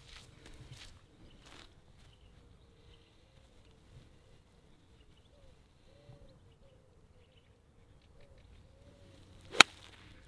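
Golf iron striking a ball off a fairway: one sharp, crisp click near the end.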